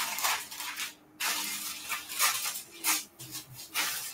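Rustling and crinkling of a thin translucent covering sheet as it is laid over rolled cookie dough and smoothed down by hand, in uneven bursts with a short pause about a second in.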